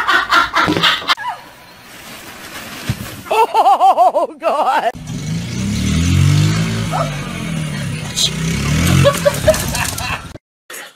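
People laughing in the first half. About halfway through, a small dirt bike's engine comes in, revving up and down.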